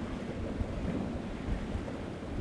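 Steady, low rumbling wash of sea waves and wind: an ocean ambience.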